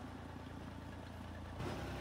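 Farm tractor engine running steadily, a faint low hum.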